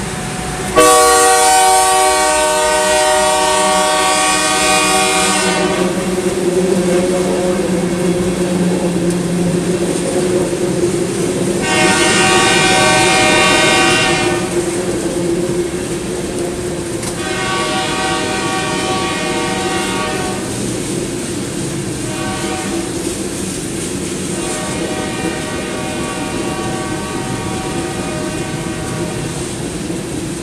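A freight train's diesel locomotive air horn sounds a series of blasts over the steady drone of the engine as the train passes. A long blast starts about a second in, then comes a pause. After that the horn sounds long, long, short, long: the grade-crossing signal.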